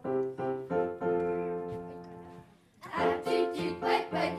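Keyboard playing piano chords as an introduction: several short chords, then a held chord that dies away. About three seconds in, the choir comes in singing.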